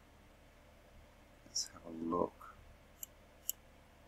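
Computer mouse clicking: a sharp click about a second and a half in, then two more short clicks near the end, a half second apart. Between the first and second clicks there is a brief murmured vocal sound.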